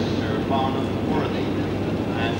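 A BR Class 47 diesel locomotive's Sulzer engine idling with a steady low hum.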